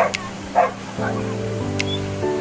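A dog barks twice, about half a second apart, over background music with long held notes.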